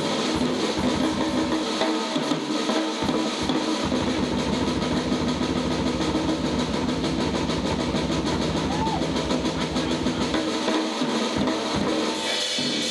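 Live instrumental jazz-fusion trio of electric guitar, bass and drums playing, with fast, even drumming. The low end fills in about four seconds in.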